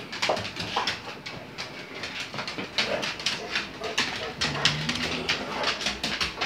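Pet dogs moving about, with a run of irregular sharp clicks and scuffles and a brief low dog whine about four and a half seconds in.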